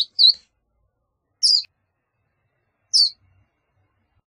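Verdin singing: short, high whistled notes, each falling in pitch, repeated about every second and a half.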